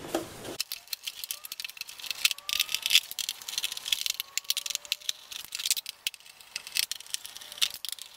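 Irregular clicks and rattles of plastic connectors, cables and a plastic bracket being handled and unplugged from a TV's main circuit board.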